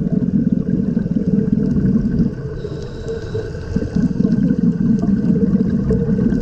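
Scuba diver breathing through a regulator, heard underwater: a bubbling rumble of exhaled air for about two seconds, a quieter gap with a faint thin hiss of an inhale, then bubbling again from about four seconds in.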